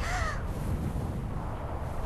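Low, steady rumble of an explosion's aftermath, a cartoon sound effect, under a screen of smoke. A laugh trails off in the first half second.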